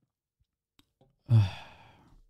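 A man's voiced sigh: a short low "haa" about a second and a half in that trails off into breath, after a pause with a couple of faint clicks.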